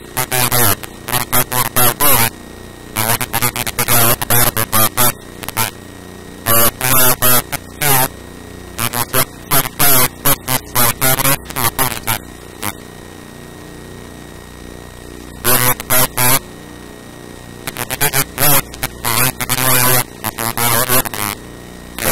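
A person talking in phrases with short pauses, over a faint steady electrical hum.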